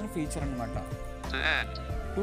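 Fast synthesized text-to-speech voice of an Android screen reader reading out menu items in quick, choppy snatches as focus moves through a list, with music playing underneath.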